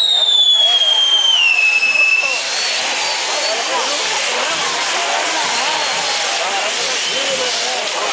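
Castillo fireworks burning. A whistling charge on the spinning fire wheel sounds, falling in pitch, and cuts off about two and a half seconds in. The steady hiss of the burning wheel goes on under it and after it.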